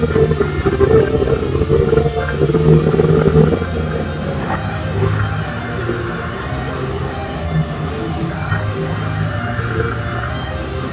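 Electric guitar playing a heavy metal solo from a cover of a deathcore song, over dense full-band music with steady low bass notes. It is loudest in the first few seconds, then settles slightly.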